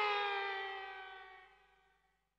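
A final sustained electric guitar note slides slowly down in pitch as it fades out, ending the song, and dies away to silence about a second and a half in.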